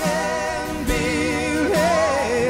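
Live band playing a song: a woman and a man sing together over acoustic guitar, bass, keyboards and drums, the voices held with vibrato.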